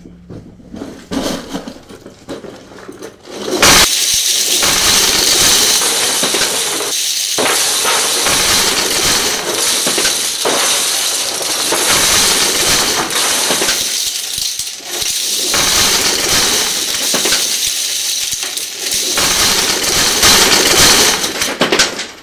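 Keychains poured out of cardboard boxes onto a wooden desk. After a few quieter clatters, a loud, continuous jingling cascade starts about four seconds in, with a few brief lulls between pours.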